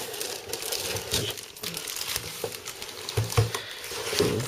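Cardboard packaging being handled: rustling and scraping as a white cardboard insert is slid and lifted out of a box with a molded paper-pulp tray, with a few soft knocks.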